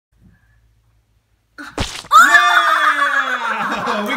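A child's loud, high-pitched scream, drawn out and slowly falling in pitch, starting about two seconds in right after a short sharp noise.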